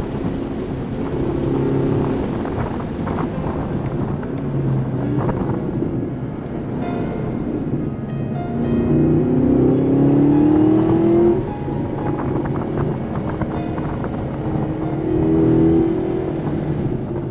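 Chevrolet Camaro's engine heard from inside the cabin while driven on a track: it runs steadily at part throttle, then pulls up in pitch under acceleration from about eight and a half seconds in and drops off sharply at an upshift a little after eleven seconds.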